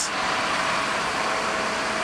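Steady street noise from a motor vehicle running, with a faint steady hum underneath.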